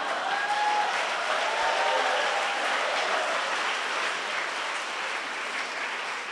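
A congregation applauding steadily, with some laughter in the first couple of seconds; the clapping eases off slightly near the end.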